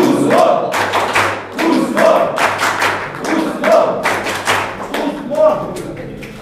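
A group clapping in rhythm, with voices chanting together about every couple of seconds; it tails off near the end.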